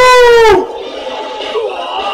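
A loud, high-pitched vocal shout held for about half a second, its pitch dropping as it ends, followed by quieter voices.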